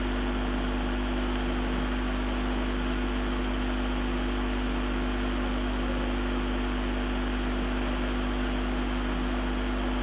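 Steady background hum and hiss: a constant low drone with a few steady tones over an even hiss, with no clicks or other events.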